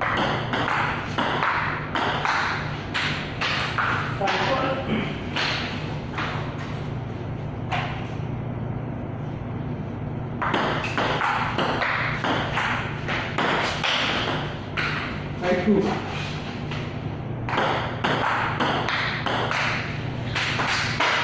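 Table tennis rallies: the ball clicking off paddles and the table in quick runs of strokes, with short pauses between points, over a steady low hum.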